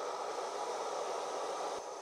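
Gas canister stove burning under a stainless camp toaster, giving a steady, even hiss.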